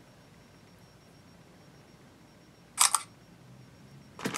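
Smartphone camera shutter sound: one short, sharp click about three seconds in, over faint room hiss.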